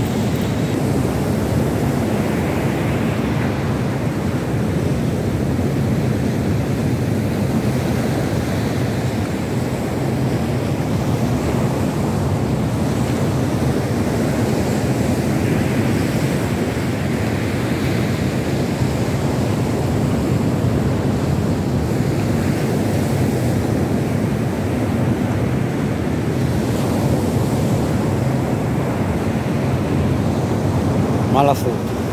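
Rough surf from a storm swell breaking and washing on a sandy beach, with wind buffeting the microphone: a steady, loud wash with no breaks.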